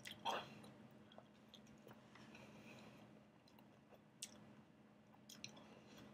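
Faint chewing of a mouthful of burrito, with a short louder mouth sound just after the start and a few soft clicks later on.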